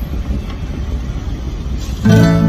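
Steady low rumble of car cabin noise heard from inside the car.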